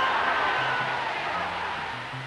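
Boxing crowd cheering and roaring after a knockout, heard on an old newsreel soundtrack, slowly fading.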